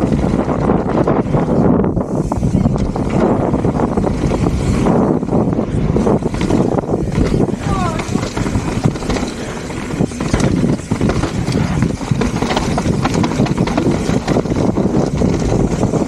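Mountain bike riding fast down a dirt trail: tyres running over the ground and the bike rattling and knocking continuously over rough terrain, with wind buffeting the on-bike camera's microphone.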